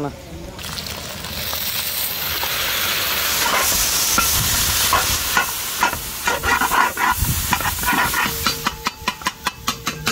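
Hot masala gravy sizzling as it is poured into a hot metal pan of idiyappam and scrambled egg. From about halfway the sizzle gives way to a metal spatula scraping and clicking against the pan as the mix is stirred, several strokes a second near the end.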